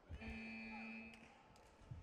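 Electronic time-up buzzer sounding one steady tone for about a second as the match clock runs out. There are dull thuds just before it and again near the end.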